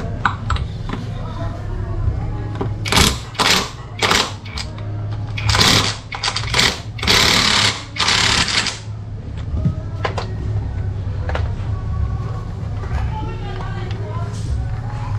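Cordless impact wrench on the rear wheel nut of a Honda Dio scooter. It fires in a string of short bursts, about eight between three and nine seconds in, one of them running close to a second, as it loosens the nut so the wheel can come off.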